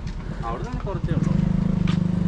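A motor vehicle's engine running close by, a steady low hum with a fast even pulse that sets in about a second in, as a car comes up the road.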